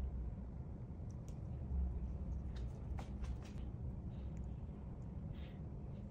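A few faint, light clicks of small metal parts being handled as the little blade screws of a Babyliss Skeleton FX trimmer are put back in, over a low steady hum.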